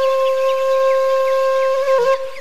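Background music: a flute holding one long, steady note after a short melodic phrase.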